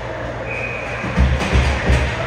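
Indoor ice rink ambience during play: a steady hum, a brief high held tone about half a second in, and a few heavy low thuds in the second half.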